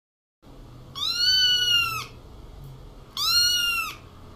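A kitten meowing twice: two long, high meows, each about a second long and slightly arched in pitch, the first about a second in and the second near the end.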